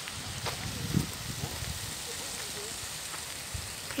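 Steady wind noise rushing over a handheld phone's microphone, with a fluctuating low rumble, faint voices in the distance and a couple of light clicks from the phone being handled.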